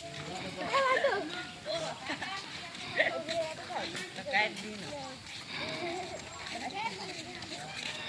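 People's voices talking and calling out outdoors, with no clear words.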